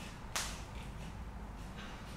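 A single short, sharp breath about a third of a second in, with a fainter one near the end.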